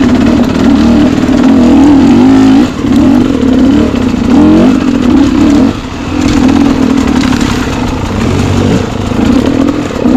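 Single-cylinder dirt bike engine being ridden, the throttle opened and closed over and over so the engine note rises and falls, with short lulls when the throttle is rolled off.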